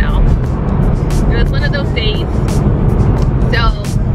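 Steady low rumble of road and engine noise inside a car's cabin while driving, with a woman's voice and music over it.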